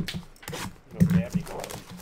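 Indistinct voice sounds mixed with the handling of trading cards and packaging: a few sharp rustles and taps in the first second, then a short voiced sound.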